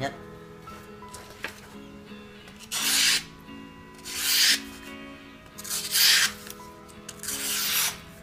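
Small Japanese fruit knife with a 125 mm blade, the shortest of a Satomi three-knife set, slicing through a sheet of paper held in the air. Four hissing slices come about a second and a half apart, each lasting about half a second. The knife cuts through smoothly, the sign of a sharp edge.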